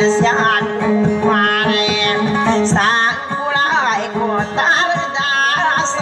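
Dayunday singing: a voice sings a wavering, ornamented melody with sliding pitches over a kutiyapi (two-string boat lute), whose steady drone runs beneath it.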